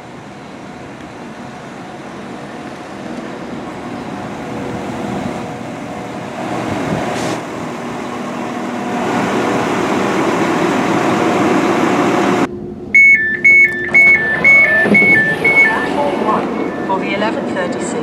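Northern Class 195 diesel multiple unit drawing into the platform, its underfloor diesel engine and wheels growing steadily louder as it comes in. After a sudden cut, a rapid high two-tone door warning beeps for about three seconds over the idling engine.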